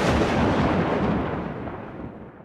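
The rumbling tail of a loud, sudden boom sound effect, like an explosion, fading slowly away.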